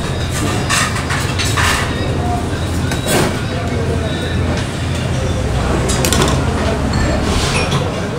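Metal serving spoons and tongs clinking and scraping against stainless steel buffet trays and a plate as a dish is served, with scattered sharp clinks over a steady low hum.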